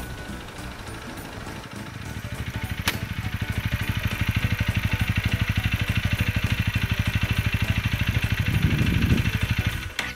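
Honda Rebel 250's single-cylinder engine idling, a steady rapid beat that grows louder from about two seconds in, with a short swell near the end. A single sharp click about three seconds in.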